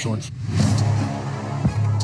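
Background music with a steady low bass line, and a brief rushing noise about half a second in.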